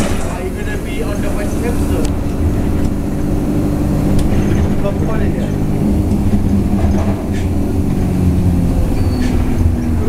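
Inside a moving London double-decker bus: steady engine and road rumble, with the engine's hum shifting in pitch now and then.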